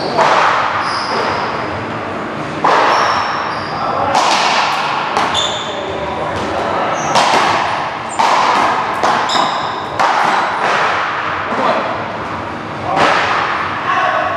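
Paddleball rally: the ball cracked by solid paddles and slapping the front wall, sharp hits every one to two seconds, echoing in a large hall.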